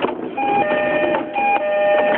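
Door chime of a JR East E231-series commuter train sounding as the doors close: a two-note electronic chime, a short higher note followed by a longer lower one, repeated about once a second.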